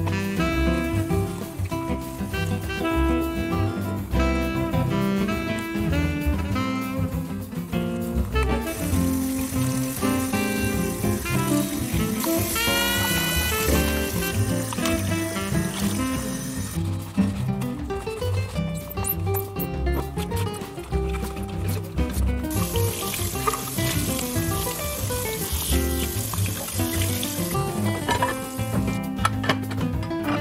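Background music with a steady beat over dishwashing at a stainless steel sink. Twice, for several seconds each, tap water runs as dishes are rinsed.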